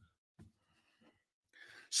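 A man's audible breath, drawn in over the last half second just before he speaks, after a mostly quiet stretch with a few faint soft blips.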